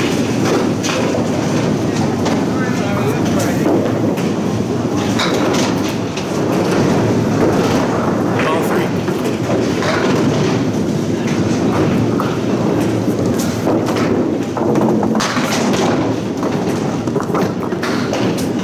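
Candlepin bowling alley noise: balls rolling along the wooden lanes in a steady rumble, with pins clattering and knocking now and then.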